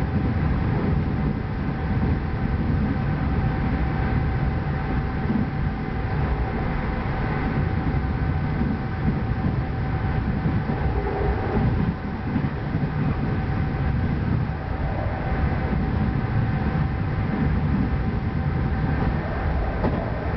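Budd-built PATCO rapid-transit car running at speed, heard from inside the car: a steady rumble of wheels on rail with a steady whine laid over it.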